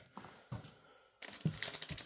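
Plastic trading-card pack wrapper crinkling as it is handled, with a couple of soft taps first and denser crinkling from just over a second in.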